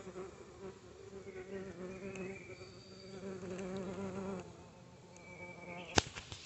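A bumblebee buzzing, a low buzz with a slightly wavering pitch. It drops off about four and a half seconds in, and a fainter buzz goes on until near the end.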